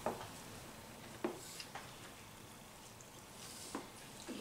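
Faint sounds of two people biting into and chewing burritos, with a few soft clicks and rustles from handling the tortilla wraps over a quiet room hiss.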